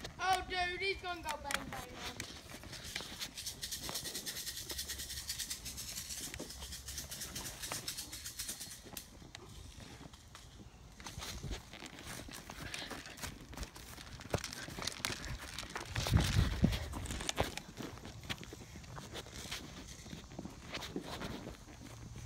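Footsteps and rustling through grass with small handling knocks on a rifle-mounted camera, a brief voice at the start, and a louder low thump about two-thirds of the way through.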